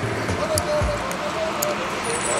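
Footfalls of a group jogging together on a paved road, with irregular thumps and clicks over a steady murmur of voices.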